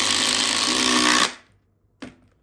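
Two Makita cordless impact drivers, a 40V XGT and an 18V, hammering at full speed as they drive long screws side by side into a wood round. The rattle is loud and steady, then cuts off about a second in as the screws are driven home.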